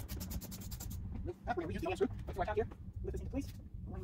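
Ratchet with an 8mm socket turning the screw at the bottom of a car's fender: a quick, even run of clicks about the first second. A person's voice follows briefly, over a steady low hum.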